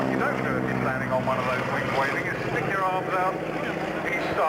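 Boeing Stearman biplane's radial engine droning as it flies past, its pitch falling slightly as it goes by and fading near the end.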